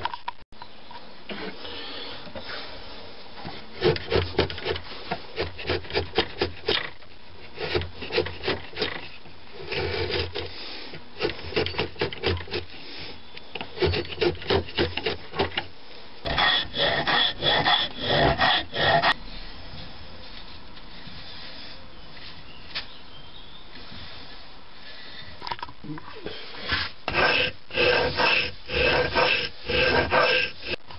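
Flat file rasping across a wooden katana handle piece clamped in a vise, shaving it down: runs of quick back-and-forth strokes broken by short pauses, with a longer lull about two-thirds of the way through.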